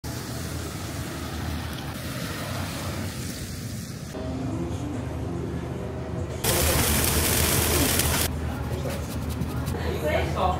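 Short cut-together stretches of location ambience: steady street noise with traffic on a wet road, then quieter indoor room sound with faint voices, then a loud steady hiss about six and a half seconds in, lasting nearly two seconds.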